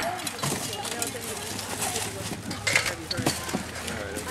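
Potatoes tipped from a plastic tub knock and tumble onto a pile of vegetables, a few scattered knocks, under low background talk.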